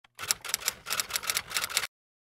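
Typewriter-style typing sound effect: a rapid run of keystroke clicks, about seven a second, that stops abruptly just before the end.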